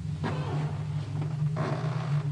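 A low, steady droning hum, with two faint, brief soft noises over it, one just after the start and one near the end.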